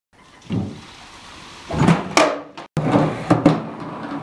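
A skateboard knocking and clacking against a wooden skate box with a metal edge: several sharp thumps, some with a short scrape or ring after them, as the board and trucks land on the box and slide along it.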